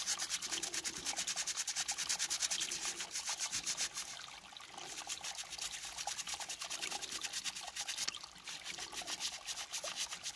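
A small brush scrubbing dirt off a raw quartz crystal in rapid back-and-forth strokes, bristles rasping on the rock, with brief pauses about four seconds in and again just after eight seconds.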